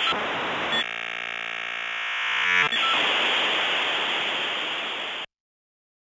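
Electronic outro sound effect: a loud hiss of white noise, broken about a second in by a steady buzzy synthesizer tone lasting about two seconds, then the hiss again, cutting off suddenly about five seconds in.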